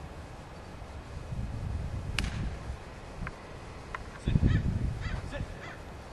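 A golf iron strikes the ball with one sharp click about two seconds in. In the last two seconds there is wind rumble on the microphone and a run of short repeated bird calls.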